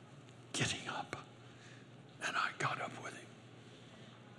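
A man whispering under his breath in two short breathy bursts, about half a second in and again about two seconds in.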